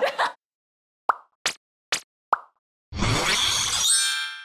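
Four short cartoon pop sound effects in quick succession, then a whoosh-like rush with a bright ringing shimmer that fades out: an edited TV bumper sting.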